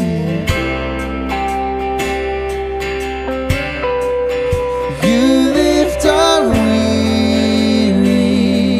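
Live worship music: strummed acoustic guitar over held notes and a steady bass, with a man's singing voice coming in about five seconds in.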